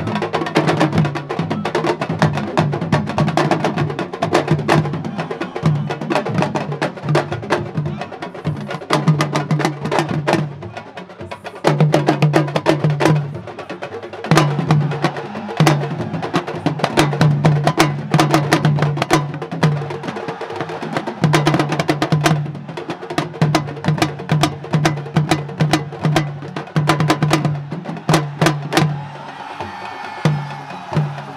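Sabar drums played fast, sharp strokes crowding together in a driving rhythm over a lower pulsing note that repeats steadily, with brief lulls now and then.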